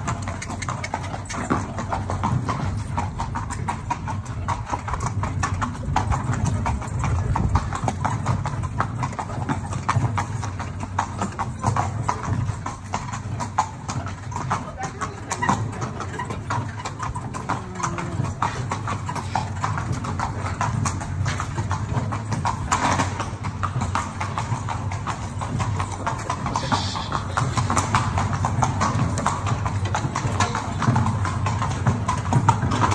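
A horse's hooves clip-clopping steadily as it pulls a carriage, with the metal carriage rattling and rolling along.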